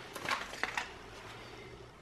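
A few faint clicks and rustles of a plastic seaweed-snack tray and its packaging being handled during the first second, then quiet room tone.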